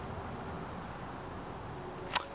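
Faint steady background noise with no distinct sound: room tone.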